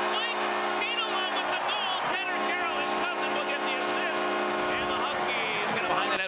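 Arena goal horn sounding one steady chord for about five seconds, signalling a goal, then cutting off.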